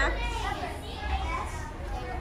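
Young children's voices chattering softly in the background, with no clear words.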